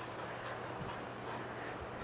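Faint footfalls of two small dogs' paws and claws on a bare concrete floor as they run and play, over a low steady room hum.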